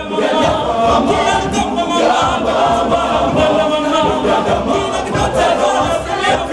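Boys' school choir singing a cappella in a chant-like style, many voices together.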